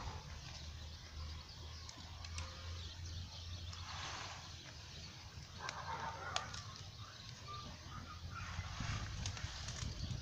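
Plastic bag of small decorative stones crinkling in short spells, about four and six seconds in and again near the end, with a few faint clicks, over a steady low rumble.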